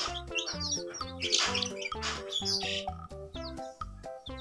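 Background music with chicks peeping over it in short, falling chirps.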